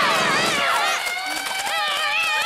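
Several young voices shouting and yelling over one another, high-pitched and without clear words.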